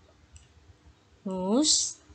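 A woman's voice says the single English word "whose" with a rising pitch, about a second and a quarter in. A few faint clicks come before it.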